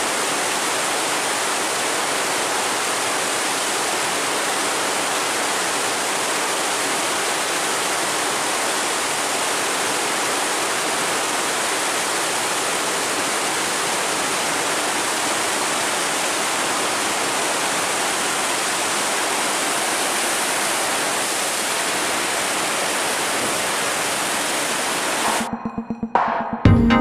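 Water rushing steadily through an open sluice gate, pouring out into churning white water. Just before the end it cuts off abruptly into electronic music.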